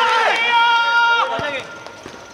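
Players shouting in celebration just after a goal, with one long held shout starting about a third of a second in and lasting nearly a second, followed by a single thud; the voices then die down.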